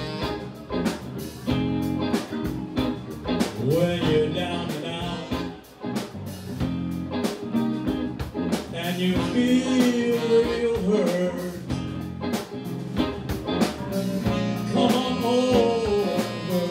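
Live blues band playing: a man singing into a microphone over electric guitar, drum kit and saxophone, with a steady beat.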